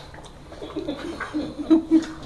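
English bulldog making a string of short, low whining vocal sounds, the loudest and longest one near the end.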